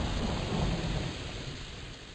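A thunderstorm: the hiss of rain over a low rolling rumble of thunder, fading down steadily.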